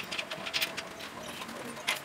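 Irregular light metallic clicks and clinks of a wrench and bolts being worked on a steel pillow-block bearing mount.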